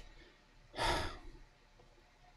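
A man sighs once, a short breathy exhale about a second in.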